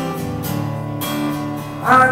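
Acoustic guitar strummed, its chords ringing on between sung lines. A man's sung note comes in near the end.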